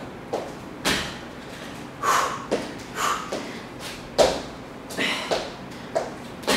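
Sneakers thudding and scuffing on the floor as the feet drive in and out during mountain climbers, in short irregular pairs about once or twice a second.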